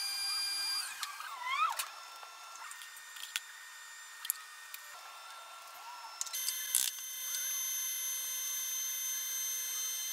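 Benchtop plastic extruder running, heard in fast-forward: a high-pitched, drill-like motor whine made of several steady tones that jump abruptly at a few cuts. A few brief rising squeals come near the start, with scattered sharp clicks.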